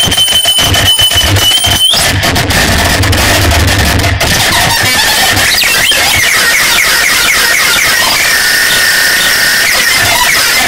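Harsh noise music: a loud, dense wall of distorted electronic noise. A steady high whine holds through the first two seconds, broken by brief dropouts, and cuts off. A low rumble fades out about halfway, and a wavering whine comes in over the second half.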